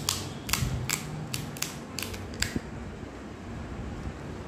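Crisp fried pani puri shell crunching: about seven sharp crackles in the first two and a half seconds.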